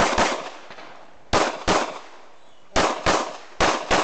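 Semi-automatic pistol fired in quick pairs: eight loud shots in four double taps. The two shots in each pair are about a third of a second apart, and the pairs come roughly every 1.3 seconds. Each shot trails a short echo.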